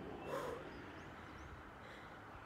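A single short, breathy exhale about half a second in from a woman straining through an abdominal exercise. A few faint bird chirps follow over low steady outdoor background noise.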